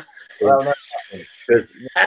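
Men laughing, with short bursts of voice, heard through a video call. Under the laughter, a faint steady high-pitched hiss runs for the first second and a half.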